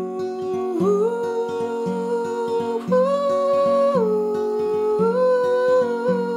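Acoustic guitar strummed in a steady rhythm while a man sings a wordless melody in long held notes, stepping up about a second in and near three seconds, then back down at four.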